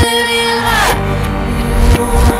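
A hip-hop song played backwards: reversed vocals and instruments, with held tones that bend in pitch over a bass line.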